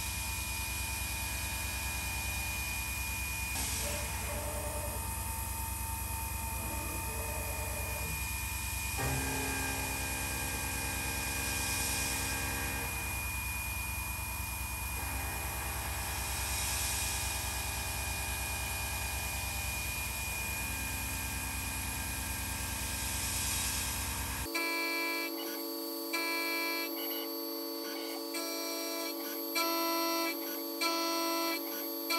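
An Intelitek Benchman MX CNC mill's spindle drives an end mill through aluminum stock in a steady, continuous cut with a low hum and several held whining tones. The tones shift about a third of the way in. Near the end the machine sound cuts off abruptly and gives way to plucked guitar music.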